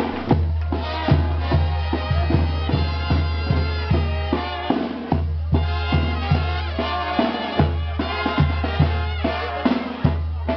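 Live festival music: drums beating about twice a second under a melody, with a steady deep bass. The drumming breaks briefly about halfway through.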